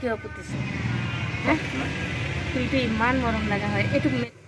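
A steady rumble of a motor vehicle running, under a woman's intermittent talking. It starts about half a second in and cuts off suddenly near the end.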